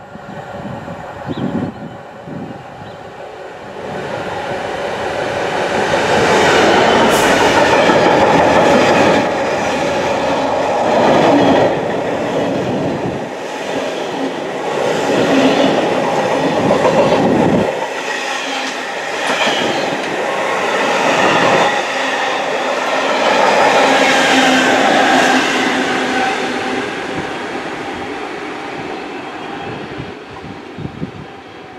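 Freightliner Class 66 diesel locomotive hauling a Network Rail engineering train of track machines past at close range: the sound builds from about four seconds in to its loudest as the locomotive goes by, then the wagons clatter steadily over the rails, easing off near the end.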